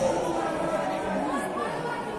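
Indistinct chatter of several overlapping voices in a large indoor sports hall, fairly quiet after the louder shouting just before.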